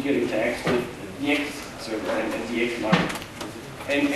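A man speaking, with two sharp knocks or clacks, one less than a second in and a louder one about three seconds in.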